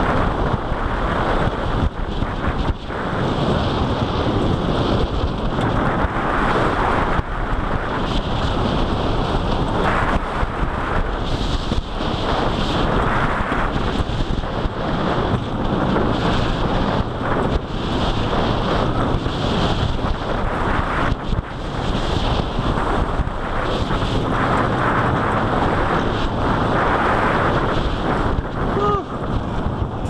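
Wind buffeting the microphone over the roar of the Lightning Rod wooden roller coaster train running at speed along its track, loud and continuous with constant clattering. Faint pitched sounds come in just before the end.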